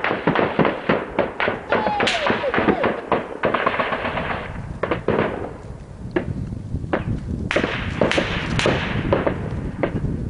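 Gunfire: rapid, close-spaced shots and bursts in the first few seconds, thinning to scattered single shots and short bursts, with one louder cluster a couple of seconds before the end.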